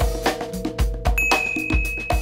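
Intro sting music with a steady beat and held tones, and a bright, high ding that rings steadily for about a second, starting a little past the middle.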